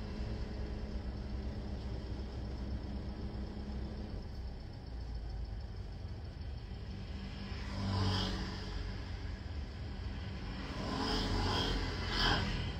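Steady low rumble with a faint hum in a car's cabin, as from the car's engine or its running. Brief louder noises rise about eight seconds in and again near the end.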